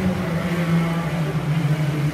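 Echoing din of a swimming race in an indoor pool hall: swimmers splashing and crowd noise from the spectators over a steady low hum.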